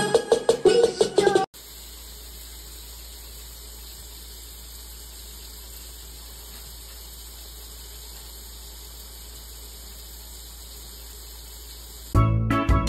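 Plucked-string background music that cuts off abruptly about a second and a half in, followed by a steady, unchanging hiss with a low hum underneath.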